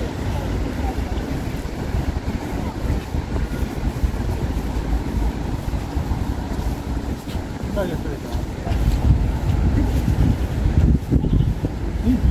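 Outdoor city ambience dominated by wind buffeting the microphone as a low rumble that gusts louder in the last few seconds, with passers-by's voices and distant traffic underneath.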